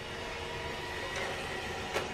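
Steady low hiss from a frying pan heating on a gas burner, with butter melting in it.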